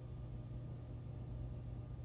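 Quiet steady low hum with a faint hiss: room tone, with no distinct event.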